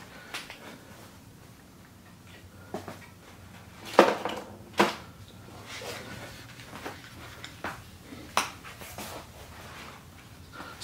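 Handling noise as someone moves things among tools: a faint low hum with about six separate sharp clicks and knocks, the loudest about four seconds in.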